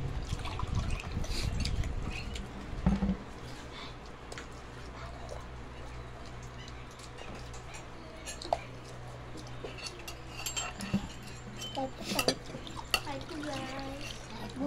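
Small children eating by hand: soft chewing and mouth sounds with scattered small clicks of dishes and a spoon, over a steady low hum. Faint voices come in near the end.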